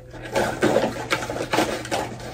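Irregular clicks and rattles of small objects being handled close to the microphone, several a second, over a faint steady hum.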